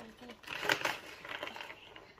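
Veggie straws being handled and broken on a plastic high-chair tray: a few light crunches and clicks.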